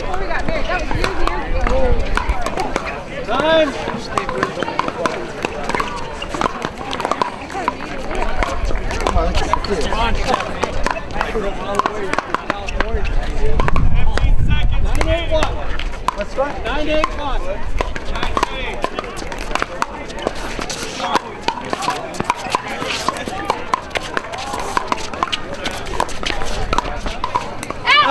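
Voices and chatter on an outdoor pickleball court, with scattered sharp pops of paddles striking balls from play on neighbouring courts.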